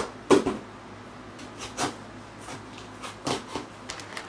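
Small scissors cutting through packing tape on a cardboard shipping box, and the cardboard flaps being worked open: a series of short, sharp snips, scrapes and knocks at irregular intervals, the loudest just after the start.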